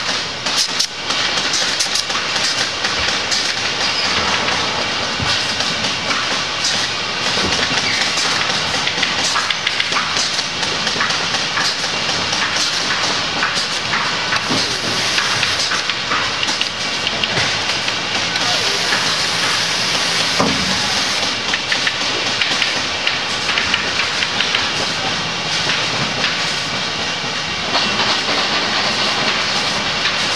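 Factory floor noise: a steady hiss of a hose-fed compressed-air hand tool over a clatter of machinery, with many sharp clicks throughout.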